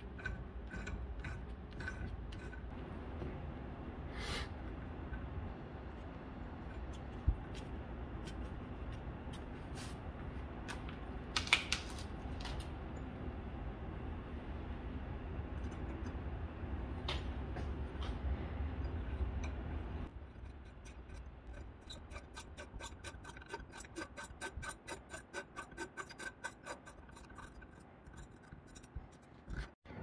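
Hand tools turning in an aluminium engine mount's bolt hole, a thread tap in a T-handle wrench cutting new threads and then a Helicoil installing tool winding a steel thread insert in, to repair stripped threads. Faint metallic scraping and scattered clicks, with a run of quick, even ticks in the last third.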